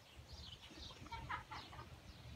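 Faint bird calls: a string of short, high, falling chirps, with a couple of lower calls a little past the middle.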